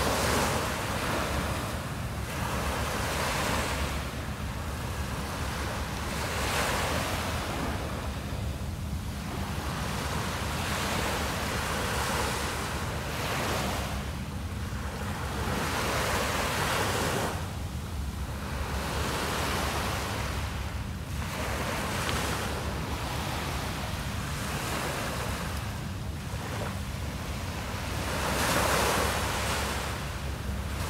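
Small waves breaking and washing up a sandy beach, a wash that swells and fades every few seconds, one of the loudest near the end.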